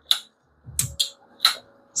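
Handling noise from a Civivi Qubit folding pocket knife: four sharp clicks spread over about a second and a half, with a soft low thump about three quarters of a second in as the knife is laid down on a mat.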